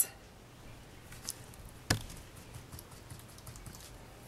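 Quiet room tone with one sharp light tap about two seconds in and a fainter tick a little before it.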